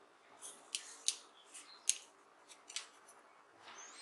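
Hands handling a battery cell and its probe wire with heat-shrink tubing: a few sharp little clicks with soft rustling between them.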